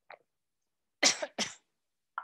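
A woman coughing twice in quick succession, after a brief faint sound just before.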